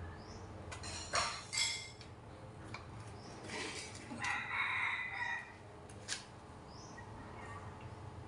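A rooster crowing once, a call a little over a second long about halfway through, with faint short bird chirps and a couple of brief sharp sounds in the first two seconds.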